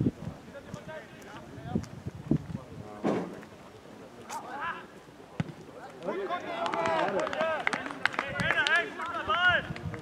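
Several voices calling and shouting over each other on an open football pitch, sparse at first and then loud and overlapping from about halfway through. A few short sharp thuds are heard along the way.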